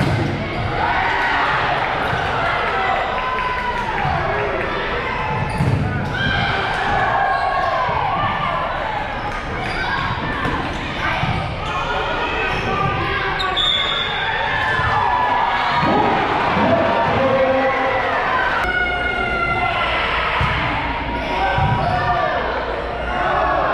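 Volleyball rally in a gymnasium: a few sharp hits of the ball and sneakers squeaking on the hardwood floor, under the steady chatter and calls of players and spectators.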